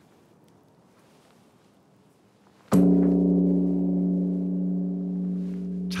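The Hyowon Bell, a large Korean bronze bell, struck once with a swung wooden log striker about two and a half seconds in, then a long, deep, steady ringing with several overtones above it.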